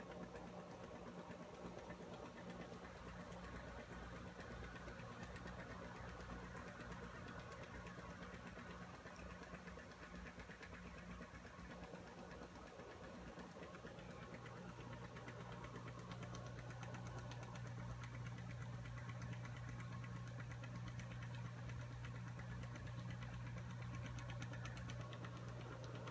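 Pool filter pump motor running with a faint, steady low hum that grows louder about halfway through.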